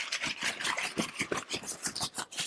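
Tent curtain fabric being rolled up by hand, rustling and crinkling in a quick, irregular run of small crackles.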